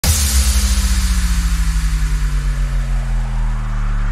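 Opening of an electronic dance track: a deep, sustained bass synth with a fast pulsing wobble that slows down and smooths out about three seconds in, under a hiss that fades after the sudden start. A rising noise sweep begins near the end.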